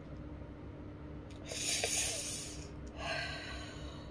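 A woman crying, sniffling in two noisy breaths through the nose: a longer one about a second and a half in and a shorter one near the end.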